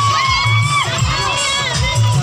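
A group of children shouting and cheering together, with long drawn-out high calls.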